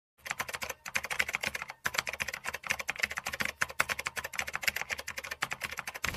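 Rapid keyboard typing clicks, a typing sound effect keeping pace with text being typed out, with two brief pauses in the first two seconds.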